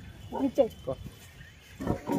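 A man's voice in a few short bursts, one about half a second in and another just before the end, over faint outdoor background.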